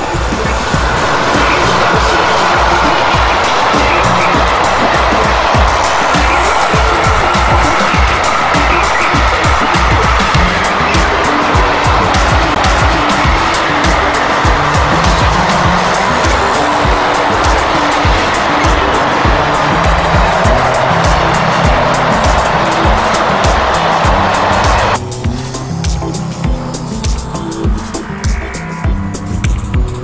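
Passing container freight train, a steady loud rolling and rail noise with a faint squeal, heard under background music; the train noise cuts off abruptly about five seconds before the end, leaving the music.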